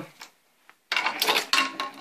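Handling noise: rustling and clicking of a hockey stick blade wrapped in cling film and tape as it is picked up and moved, starting about a second in.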